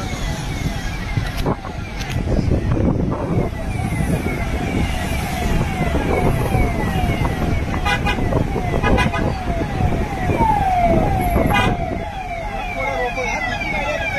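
Vehicle siren sounding a fast, repeating falling sweep, about two or three sweeps a second, over the rumble of a line of cars on the move.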